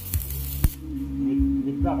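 Stick-welding arc crackling and hissing, cutting off suddenly under a second in as the arc is broken. A steady low hum carries on after it, and a man laughs near the end.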